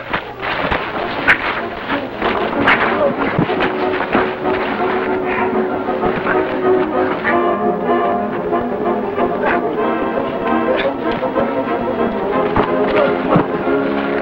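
Orchestral film score with brass playing over a fistfight, with sharp hits and scuffling scattered through it; the music turns fuller and more sustained about halfway in.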